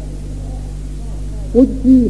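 Steady electrical mains hum on an old tape recording, with faint voices in the background during a pause in the recitation; about one and a half seconds in, a man's voice resumes reciting Urdu verse loudly.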